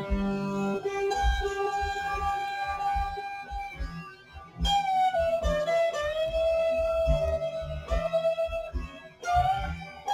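Distorted Ibanez electric guitar playing a lead line of long sustained notes, sliding down a little under five seconds in and rising again near the end, over a backing track with low drum and bass thumps.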